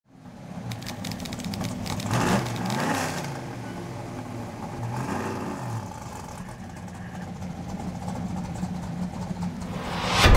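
Camaro V8 engine running and being revved, its pitch rising and falling about two seconds in and again about five seconds in.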